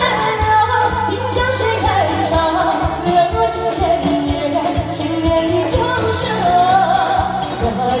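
A woman singing a Mandarin song live into a handheld microphone, her voice amplified over backing music with bass and a regular drum beat.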